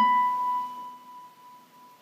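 A single note picked on a gypsy jazz acoustic guitar, struck once and left ringing, fading steadily over about two seconds.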